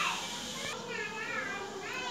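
Faint, high-pitched background voices under the quiet room sound.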